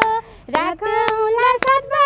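A woman singing a Nepali dohori folk song unaccompanied in a high voice, with hand claps keeping time about twice a second. Her line breaks off briefly at the start and picks up again about half a second in.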